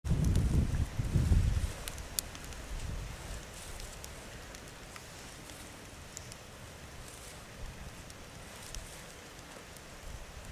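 Wind buffeting the microphone for the first second and a half, then a faint hiss of outdoor air broken by scattered faint sharp clicks and scrapes of a flint striker being struck.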